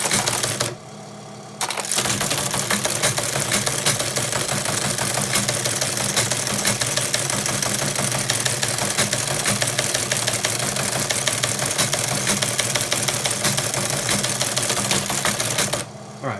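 Teletype Model 15 typebar teleprinter printing a CP/M directory listing. A short burst of clatter comes first, then, about two seconds in, a continuous rapid clatter of typebars over a steady motor hum. It stops just before the end.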